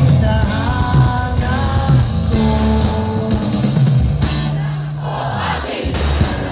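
Live rock band playing through a concert sound system, with singing over guitars and drums, recorded from within the crowd.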